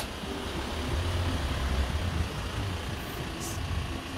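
A van's engine running close by as it pulls up and stops, a low rumble that swells about a second in and eases toward the end.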